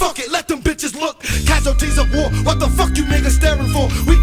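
Hip hop track with a rapped vocal over a heavy bass beat; the beat drops out for about the first second, leaving the rapping alone, then comes back in.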